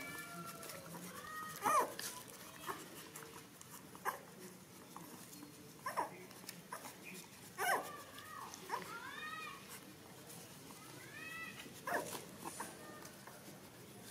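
Nursing puppies whining, several short, high calls that rise and fall in pitch, with short clicks in between.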